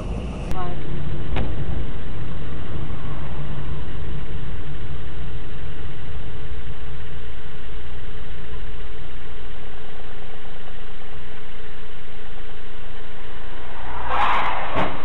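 Steady car engine and road noise heard inside the cabin through a dashcam microphone, loud and unchanging, with a single short click about a second and a half in.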